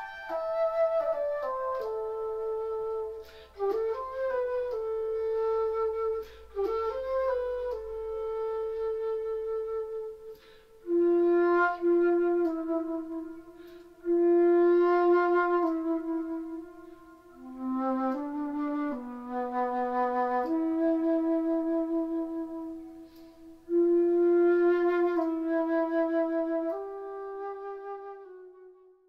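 Solo transverse flute playing a slow melody in long held notes, phrase by phrase with short breaks between them; the last note fades out at the end.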